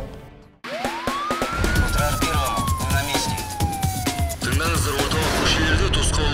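The sound fades almost to silence, then closing-theme music with a beat starts, carrying a siren sound effect: one siren sweep rises for about a second and then falls slowly for a couple of seconds.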